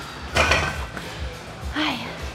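A lifter straining through the final rep of a barbell lift: a sharp, forceful breath about half a second in, then a short grunt falling in pitch near the end. Background gym music plays underneath.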